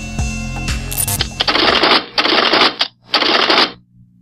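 Background music, then three short bursts of hiss-like noise, each about half a second long. The first comes about a second and a half in, and the last cuts off sharply near the end.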